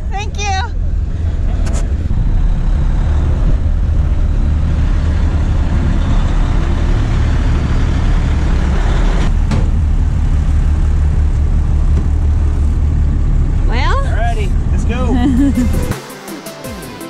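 Steady low rumble of a pickup truck on the move, with wind noise on the microphone. A voice is heard briefly at the start and again near the end.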